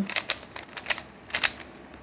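Plastic 3x3 Rubik's cube being turned by hand, its layers clicking as they rotate: a quick run of sharp, irregular clicks at the start, then a few more about a second and a half in.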